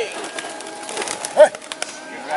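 Pigeons held aloft and waved by their handlers, their wings fluttering and clapping in quick scattered beats. A short shouted call cuts in about halfway through, and the end of a longer call trails off at the very start.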